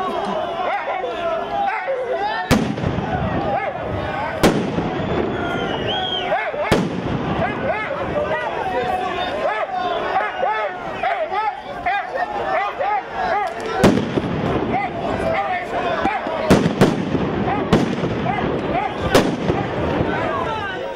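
Firecrackers and fireworks going off in sharp single bangs, about eight of them, several close together near the end, over a crowd of men shouting.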